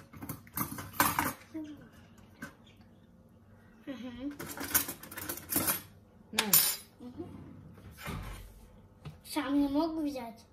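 Kitchen utensils clinking and knocking against bowls and dishes while cake batter is being portioned, with several sharp clinks scattered through.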